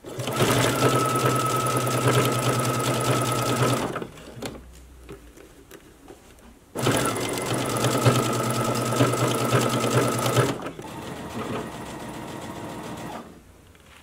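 Brother computerized sewing machine stitching through black sequin fabric in two runs of about four seconds each with a pause between. Its motor gives a steady whine over the rapid beat of the needle.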